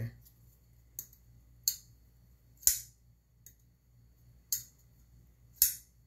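CJRB Shale button-lock folding knife being worked open and shut by hand: five sharp clicks about a second apart, plus a fainter one, as the blade swings and the button lock engages.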